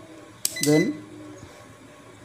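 A sharp click about half a second in, with a short high tone, as the rotary range selector of a Sunshine DT-890N digital multimeter is turned.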